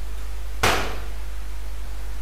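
A steady low electrical hum from the recording's microphone, with one short, sharp knock a little over half a second in.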